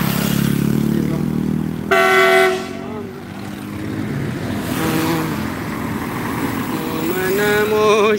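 Roadside traffic noise: engine rumble with one short vehicle horn blast about two seconds in, then a vehicle passing around the middle.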